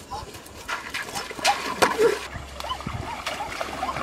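Water splashing in a shallow stream as someone wades in, with a few sharp splashes about a second and a half in. A dog whines in short high calls, more often near the end.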